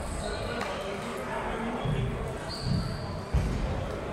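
Busy table tennis hall: background chatter with scattered clicks of celluloid-type table tennis balls bouncing on tables and bats from the many matches, and one sharp, louder ball click on the near table a little over three seconds in.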